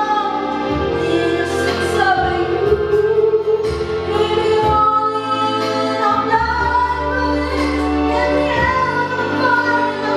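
A woman singing a slow song over an instrumental backing track, holding long sustained notes.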